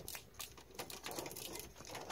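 Faint, irregular clicks and rustles of insulated wires and capped splices being pushed into a furnace's sheet-metal junction box.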